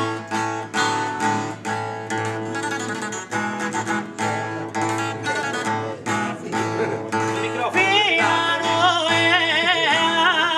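Unamplified acoustic guitar strumming a steady chordal accompaniment for Sardinian canto a chitarra in the canto in re. About eight seconds in, a male singer enters over it with a high, heavily ornamented line that wavers in pitch.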